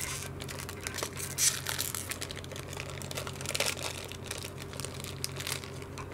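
Crinkling and tearing of a chocolate's wrapper being worked open by hand, in irregular crackles with a louder one about a second and a half in.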